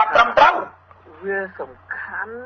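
Fast male speech that cuts off about half a second in. It gives way to a thin, telephone-quality recording with a steady low electrical hum, in which a higher-pitched voice makes short utterances.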